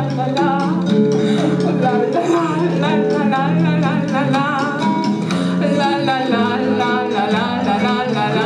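Live band music: plucked guitar accompaniment and steady bass notes under a wavering melody line with vibrato, in a passage without lyrics.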